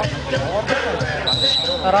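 Basketball bouncing on an asphalt court amid the chatter of players and spectators. A short steady high tone sounds about halfway through.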